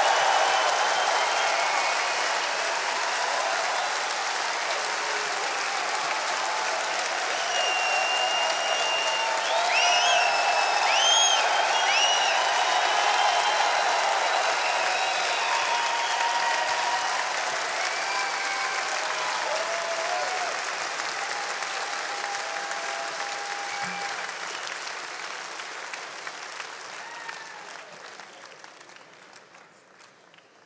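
Large concert-hall audience applauding and cheering, with a few high calls rising above the crowd about ten seconds in. The applause fades away over the last few seconds.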